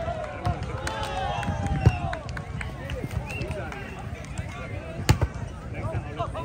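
Players and spectators at a grass volleyball game calling out in overlapping voices. About five seconds in comes one sharp slap of a hand striking the volleyball, the loudest sound here.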